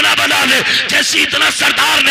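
A man's loud voice through a microphone and PA system, going on without a pause.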